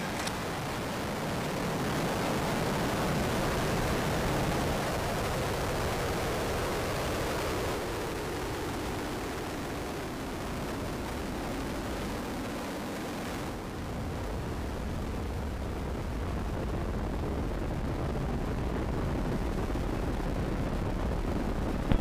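Roar of the Ares I-X's solid rocket motor during the climb after liftoff, a steady rushing rumble. About two-thirds of the way through, the upper hiss falls away and a deeper rumble is left.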